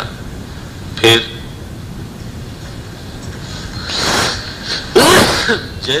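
A man's two loud, explosive bursts of breath from the throat and nose, about a second apart, the second one louder, as in a sneeze or a fit of coughing.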